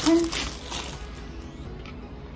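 Plastic bag crinkling and rustling as it is pulled off, dying away within the first second, with faint background music underneath.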